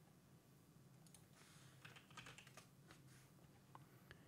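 Faint typing on a computer keyboard: a loose scatter of soft keystrokes from about a second in to near the end, typing the exit command into the SSH terminal.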